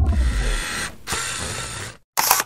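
Sound effects for an animated logo: the tail of a low, falling whoosh fades out in the first half-second, giving way to a hissing, rustling noise that breaks off briefly about a second in and stops suddenly at the end.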